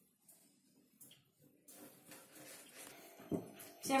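Mostly near silence with a couple of faint taps of a kitchen knife cutting tomatoes on a cutting board, then quiet room sound with a single soft thump near the end.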